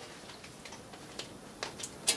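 A few faint, light ticks at irregular intervals over quiet room noise.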